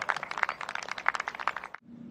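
Golf gallery applauding a holed putt: dense, irregular clapping that cuts off abruptly near the end.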